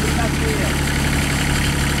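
Kubota 1600 compact tractor's diesel engine idling steadily.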